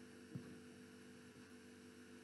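Near silence: a faint steady electrical hum under the room tone, with one brief faint click about a third of a second in.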